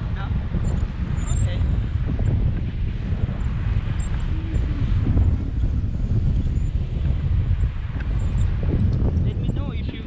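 Wind buffeting the camera microphone as a tandem paraglider flies, a loud, uneven low rumble.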